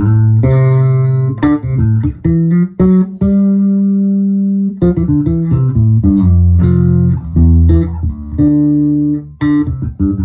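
Early-2000s Landing L-5 five-string electric bass with an ash body and two EMG active pickups, played with both pickups, volume and tone all the way up. It is a run of plucked notes, with one note held for about a second and a half near the middle.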